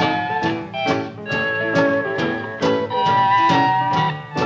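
A western swing band playing an instrumental passage with no singing: held melody notes over a steady beat of about two strokes a second.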